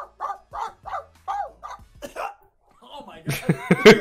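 A man's voice imitating a puppy yapping: a quick string of about eight short, high yips over the first two seconds. Loud laughter breaks out near the end.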